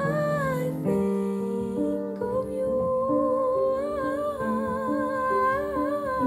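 Woman singing a slow melody with vibrato over grand piano accompaniment.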